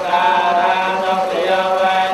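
Theravada Buddhist monks chanting a blessing in drawn-out, sustained tones, carried through a microphone.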